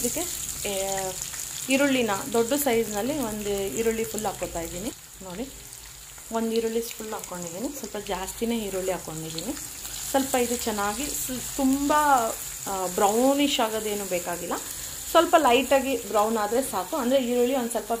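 Chopped onions and green chillies sizzling in hot oil in a non-stick pan while a silicone spatula stirs them. Wavering pitched sounds come and go over the frying, with a brief lull about five seconds in.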